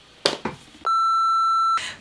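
A steady electronic beep tone, about a second long, starting a little before the middle. Everything else drops to silence under it, as in a censor bleep dubbed over a word. A brief sharp sound comes shortly before it.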